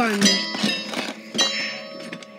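A struck object clanging, with a ringing tone that hangs on for over a second, and a few light knocks.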